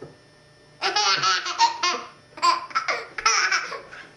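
Baby laughing: two runs of rapid, high-pitched laughter, the first starting about a second in and the second just after a short pause.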